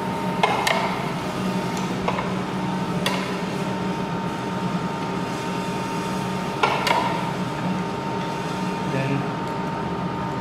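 Paper wipe rubbing and being handled around a flywheel meat slicer's blade and guard, with a few light knocks and clicks against the metal, about half a second, three and seven seconds in, over a steady background hum.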